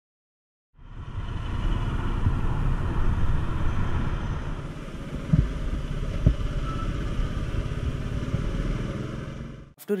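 Royal Enfield motorcycle being ridden in town traffic, its engine running under heavy wind rush on the mounted camera's microphone. Two sharp knocks come about five and a half and six seconds in, and the sound cuts off abruptly just before the end.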